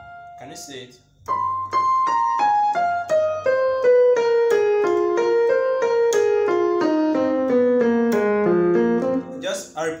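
Electronic keyboard on a piano voice playing a quick run of notes that steps steadily down in pitch for about eight seconds, a praise-break run derived from the F blues scale.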